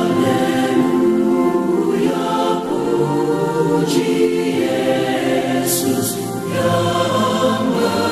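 A choir singing a Christian gospel song in long held notes.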